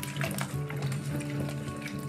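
Water splashing and sloshing as hawthorn berries are swished and rubbed by hand in a steel bowl of water, over steady background music.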